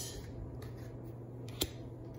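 A single sharp click about one and a half seconds in, with a fainter tick before it, over a low steady hum.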